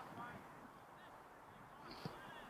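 Near silence: quiet outdoor ambience with a few faint distant calls in the first second.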